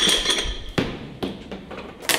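Iron dumbbells knocking against each other and the rack as a pair is taken off it: three sharp metal knocks, the first with a short ring.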